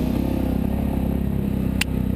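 An ATV's engine running steadily while riding a dirt trail, the sound sitting mostly low in pitch, with a single sharp click near the end.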